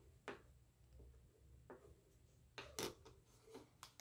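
Near silence with a few faint, sparse clicks and taps of fingers handling a small plastic toy Christmas tree and threading a string through it; the loudest pair comes just before three seconds in.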